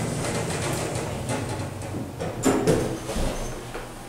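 Elevator's single-slide door closing over a steady low hum, with a brief louder sound about two and a half seconds in.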